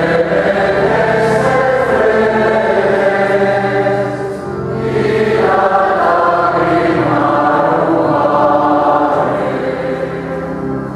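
Choir of men's voices singing a slow hymn in long held notes, with steady low notes underneath and a short break between phrases about four and a half seconds in.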